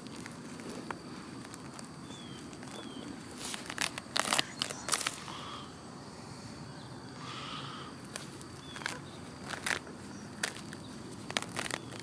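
Hands rummaging and digging through loose potting soil and sweet potato roots in a fabric grow bag: scattered rustles and crackles, busiest about four to five seconds in and again near the end.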